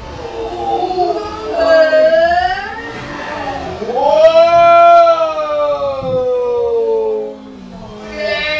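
Long, drawn-out wordless yelling from excited people: a call that rises then falls about one and a half to two and a half seconds in, then a louder long call from about four seconds in that slowly falls in pitch and stops about seven seconds in.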